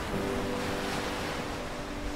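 Rushing surf and wind noise of a rough sea, with a sustained low chord of background music coming in just after the start and holding steady.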